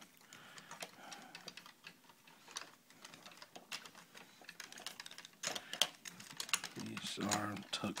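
Plastic parts of a large Transformers toy clicking and snapping as they are handled and moved into place: a quick, irregular run of small clicks.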